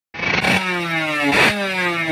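Drag bike engine revved hard and held high, blipped about every second: with each blip the pitch jumps up, then sags slowly until the next one.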